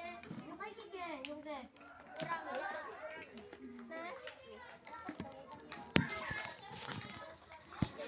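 Children's voices chattering as they play, with two sharp knocks, one about six seconds in and one near the end.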